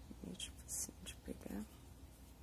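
A woman whispering a few short words under her breath, very quietly.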